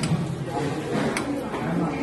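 People talking, with two sharp clinks of metal coffee cups being handled, one right at the start and one about a second in.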